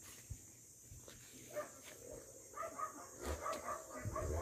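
A puppy giving a quick series of faint, short, high-pitched cries, starting about halfway through.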